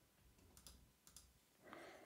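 Near silence with two faint computer mouse clicks, about two-thirds of a second and just over a second in, then a faint breath near the end.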